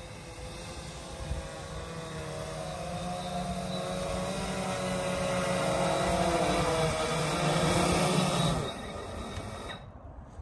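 Electric lift motors and propellers of a Titan Cobra quadplane VTOL drone in hover, a buzz of several wavering tones from the props running at slightly different speeds, growing steadily louder as it comes down and lands. The sound drops away suddenly about a second and a half before the end as the motors are cut.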